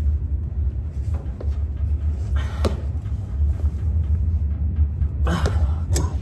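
A steady low rumble throughout, with a few faint metallic clicks of a wrench working a stuck bolt under a car, and a brief voice sound near the end.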